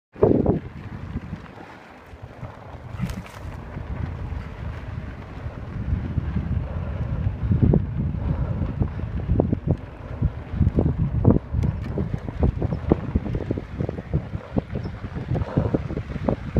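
Wind buffeting the microphone of a mountain bike riding over a dirt trail, with many short knocks and rattles from the bike over bumps.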